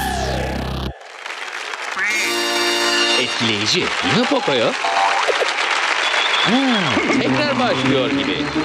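Electronic dance music stops with a falling pitch sweep about a second in. Then comes a steady cheering and applause noise, with cartoon voices whooping up and down in pitch.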